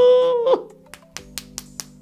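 A held, drawn-out vocal note for about half a second, then a quick series of about five sharp hand claps.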